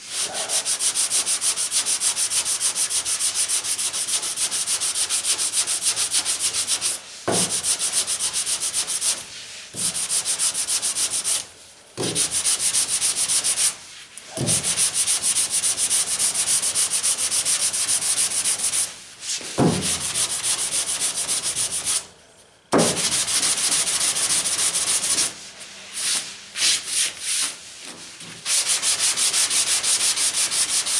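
Hand block-sanding of FeatherFill G2 primer with 220-grit paper: rapid back-and-forth scratching strokes in long runs, broken by short pauses every few seconds and a choppier, stop-start stretch near the end. The fine grit gives a smooth, dry, even rasp as the primer comes off as a fine powder.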